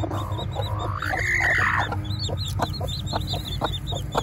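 Downy chicks peeping steadily in quick, high chirps around a brooding hen, with one longer rising-then-falling call about a second in and a few soft clicks later.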